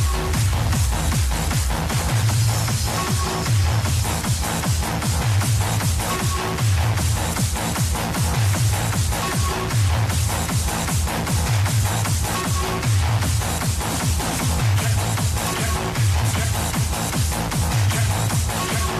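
Hardstyle DJ mix playing: an electronic dance track with a steady kick-drum beat and a heavy repeating bass line, and a short high note that comes back about every three seconds.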